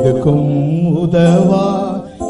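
A man singing a devotional chorus, drawing out long wavering notes, with instrumental backing underneath.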